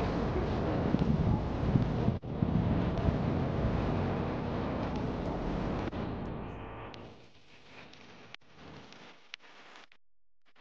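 Wind buffeting the camera microphone, a dense low rumble mixed with outdoor street noise, which fades about seven seconds in to a much quieter stretch with a few faint clicks.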